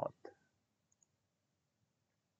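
The word "dot" ends, then near silence broken by two faint computer mouse clicks, close together, about a second in.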